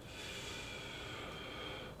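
A person breathing out in one long, steady exhale that lasts about two seconds.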